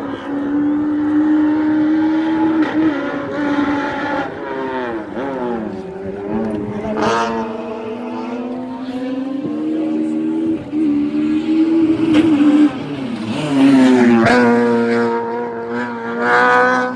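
Puma kit car's engine at full racing revs up a hillclimb, its pitch repeatedly rising and dropping as it changes gear and slows for corners. It grows louder toward the end as the car comes into view around a hairpin.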